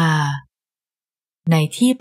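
Only speech: a narrator's voice reading in Thai, breaking off about half a second in, with about a second of total silence before the reading resumes.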